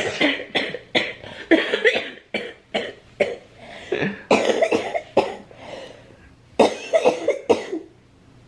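A man laughing hard in short, breathy, cough-like bursts.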